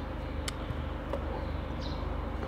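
Steady low background hum of outdoor ambience, with a single sharp click about half a second in and a faint short high chirp near the end.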